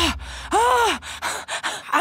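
A girl's voice gasping breathlessly, two drawn-out voiced breaths whose pitch rises and falls, the second about half a second in. She is catching her breath with relief after fleeing.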